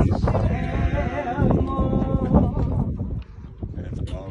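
A voice holding a few long, wavering notes with a wide vibrato, which fade out about three seconds in.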